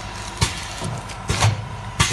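Automatic liquid sachet filling and sealing machine running, with sharp clacks from its sealing jaws closing and opening, several in a row about half a second to a second apart, over a steady machine hum with a thin steady tone.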